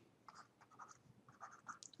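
Faint scratches of a stylus writing on a screen: several short strokes as labels and arrows are drawn.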